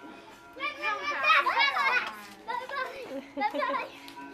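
Young children's high-pitched wordless voices while playing: squeals and babble in several bursts, loudest about a second in.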